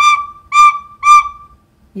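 Red plastic toy flute blown in three short toots on the same high note, about half a second apart, the third held a little longer.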